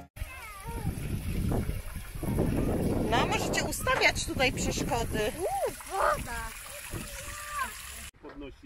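Children's high-pitched voices calling and squealing, with water splashing underneath that is strongest a couple of seconds in.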